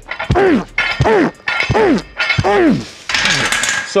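Fast barbell pad bench press reps: about four forceful grunts less than a second apart, one with each rep, with knocks of the bar coming down onto the thick foam pad on the lifter's chest. A breathy hiss follows near the end as the set finishes.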